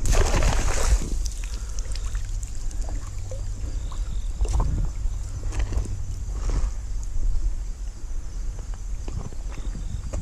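Water sloshing and splashing as a dip net is swept through shallow creek water, loudest in the first second, followed by scattered smaller splashes and knocks over a steady low rumble.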